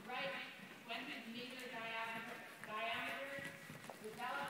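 Faint talking, with the hoofbeats of a ridden horse moving under it.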